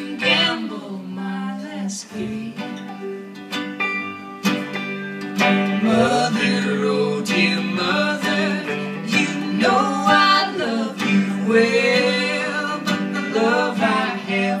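Live acoustic country music: an instrumental break between verses, with acoustic guitar and plucked strings carrying a melody that bends in pitch.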